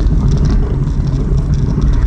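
Steady low rumble of a car's engine and tyres heard from inside the cabin while cruising slowly in fourth gear.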